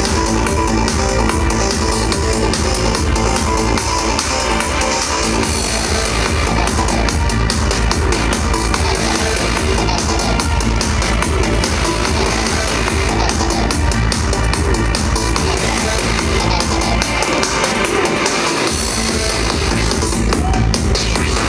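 Loud live psytrance played through a club PA system, with a steady driving kick-drum beat under layered electronic synth sounds.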